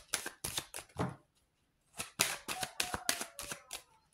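A deck of tarot cards being shuffled by hand, the cards snapping in quick runs of crisp clicks: a short run in the first second, a pause, then a longer, denser run from about two seconds in until near the end.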